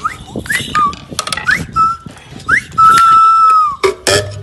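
Bird-like calls from a whistle held in the mouth: several short rising chirps, then about three seconds in one long steady note held for about a second. Light taps of sticks on wooden percussion run underneath.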